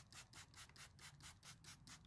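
Near silence with faint, evenly spaced spritzes from a hand-squeezed trigger spray bottle misting cleaner, about four or five a second.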